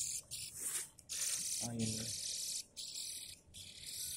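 Nestling songbird begging for food: a run of short, hissy, high-pitched calls, about half a dozen bursts, as it is being hand-fed.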